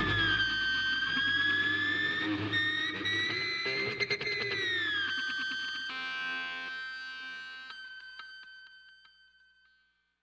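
A distorted electric guitar sustains its final note as a power-metal instrumental ends. The note bends up and back down, then fades away to silence about nine seconds in.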